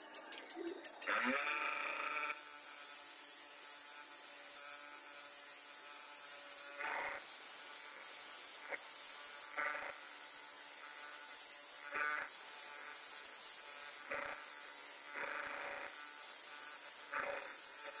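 Bench grinder spinning up with a rising whine about a second in, then grinding the edge of a forged iron shovel blade: a steady high grinding hiss, broken by short breaks every one to three seconds as the blade is lifted off the wheel.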